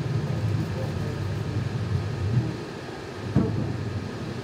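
Low, steady rumble of room noise with faint murmured voices, and a single sharp thump about three and a half seconds in.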